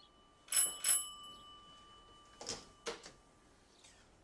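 Doorbell ringing twice in quick succession, a high metallic ring that lingers for about two seconds, followed by two short knocks near three seconds in.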